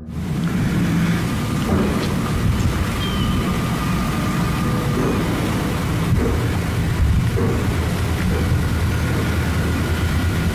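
Steady low rumbling noise on a handheld camera's microphone as it is swung about. One brief sharp sound comes about six seconds in, which the narrator takes for a knock in reply to a request to knock.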